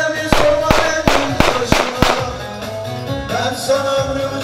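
Live folk dance music for a hand-in-hand line dance: a held, ornamented melody over a heavy drumbeat, with strong beats about three a second for the first two seconds, easing off briefly before picking up again near the end.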